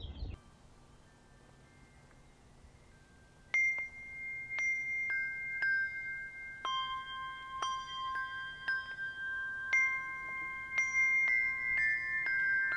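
Handbell duet: brass handbells struck one at a time in a slow melody, each note ringing on, starting about three and a half seconds in at roughly one note a second, with notes overlapping more quickly near the end.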